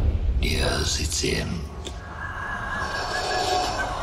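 Film-trailer sound design: a low rumbling drone, with a brief breathy, whisper-like voice sound near the start and then a steady high thin tone.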